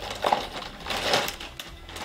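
Packaging crinkling and rustling as items are handled, in a few irregular bursts, the loudest around one second in.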